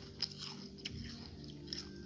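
Close-up chewing of crisp bim bim snacks, with a few sharp crunches spread through the moment.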